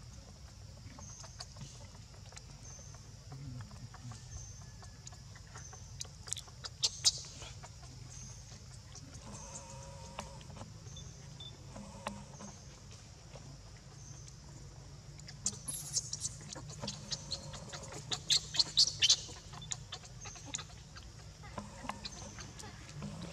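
Baby macaque squealing in short, sharp, high-pitched cries, a couple about six seconds in and a rapid run of them from about fifteen to nineteen seconds. Under them, a steady low hum and a faint high chirp repeating a little more than once a second.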